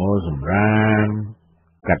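A man's voice reading news narration in Khmer, with one long drawn-out syllable near the middle and a short pause before the next word.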